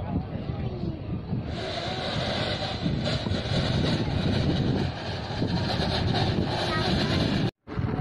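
Indistinct voices of people talking over a steady, noisy outdoor rumble, with a hiss that comes in about a second and a half in. The sound drops out for a split second near the end.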